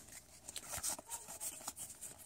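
Faint rustling and sliding of Pokémon trading cards being drawn out of an opened booster pack and handled, with light scattered ticks and scrapes.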